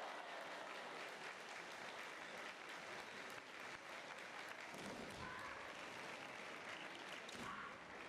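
Spectators applauding steadily after a point is awarded in a kendo bout.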